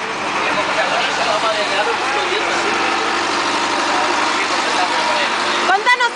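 Engine of an old, run-down bus running steadily, heard from inside the cabin, with a steady hum and people talking faintly over it.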